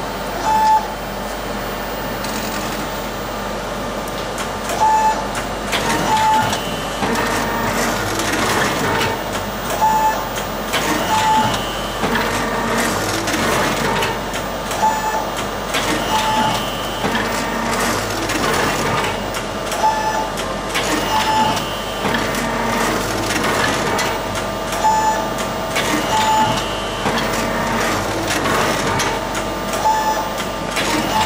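Automatic robotic book scanner at work, its arm lowering the scanning head onto the book and turning pages with suction and an air blower. Motor whirring and mechanical clicks, with short beeps at one pitch every second or few.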